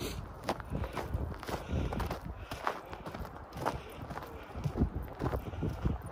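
Footsteps walking in shallow snow, about one step a second, with a low rumble of wind on the microphone.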